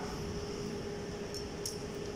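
Steady room hum with a faint constant tone, and two small light clicks about a second and a half in.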